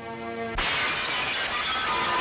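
Dramatic film background score: a held chord, then about half a second in a sudden loud crash that rings on as a dense wash under the music, a shock sting for a moment of bad news.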